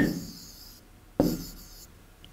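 Marker pen writing on a whiteboard: a short scratchy stroke lasting about a second, with a sharp tap about a second in.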